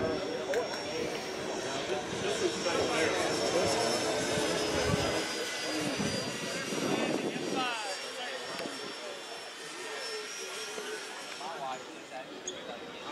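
Electric ducted-fan model jet flying overhead, a steady high fan whine that drifts slowly lower in pitch, with people talking nearby.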